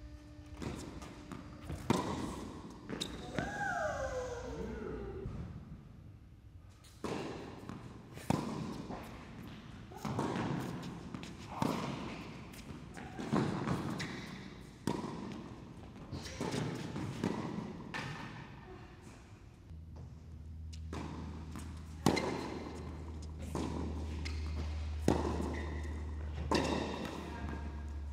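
Tennis balls struck by racquets and bouncing on an indoor hard court, a sharp hit every second or so that echoes in the hall. A short falling squeal or cry comes about three to four seconds in, and a low hum sets in about twenty seconds in.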